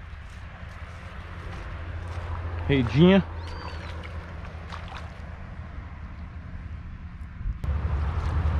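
A seine net on wooden poles dragged through a shallow muddy puddle, with faint splashing over a steady low rumble. A man's short call, about three seconds in, is the loudest sound.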